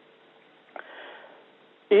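A short sniff close to the microphone about three-quarters of a second in, with a faint steady hum beneath it.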